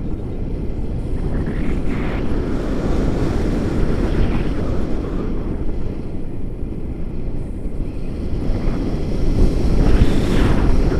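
Steady rush of airflow buffeting an action camera's microphone on a paraglider in flight.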